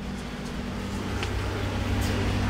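Steady low mechanical hum with a faint click about a second in.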